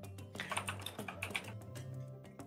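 Typing on a computer keyboard: a run of quick, irregular key clicks, over quiet background music.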